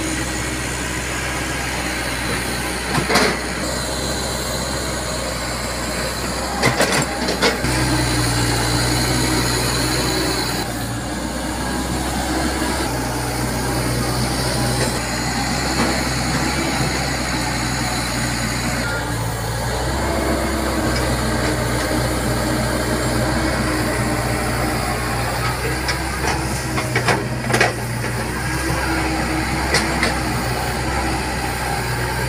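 Komatsu PC70 hydraulic excavator's diesel engine running, its note stepping up and down several times as the hydraulics take load while the bucket digs. A few sharp knocks stand out: one about three seconds in, a cluster around seven seconds and two more near the end.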